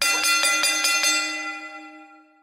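Bell sound effect: a bell struck about six times in quick succession, roughly five strikes a second, then left to ring out and fade. It marks the end of the training session.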